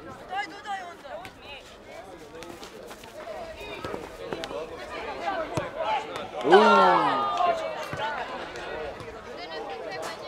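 Voices shouting and calling out across an outdoor football pitch, with one loud falling shout about six and a half seconds in, and a few sharp knocks scattered through.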